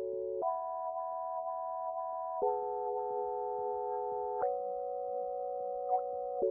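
Teenage Engineering OP-Z synthesizer playing sustained, pure-toned chords with no beat, moving to a new chord about every two seconds.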